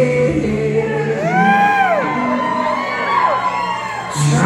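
Live reggae band's singers holding the closing vocal line of a song. A whooping vocal glide rises and falls just over a second in, followed by a long held note, with the crowd joining in.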